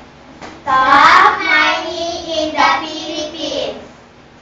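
Children's voices singing, starting about a second in and stopping just before the end, in short held phrases.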